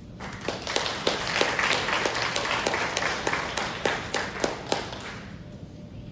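Applause from a small audience, individual claps distinct, starting right away and dying out about five seconds in.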